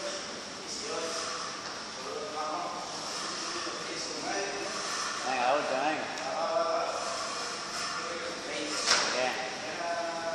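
Indistinct voices talking throughout, with a single sharp knock about nine seconds in.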